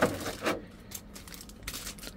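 A 1/6 action figure being pulled out of a plastic blister tray: a sharp click, then a brief rub and crinkle of its plastic wrap about half a second in, fading to faint rustles.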